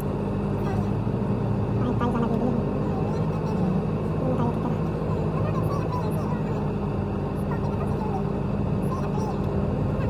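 Steady low engine and road hum of a car moving slowly through city traffic, heard from inside the cabin.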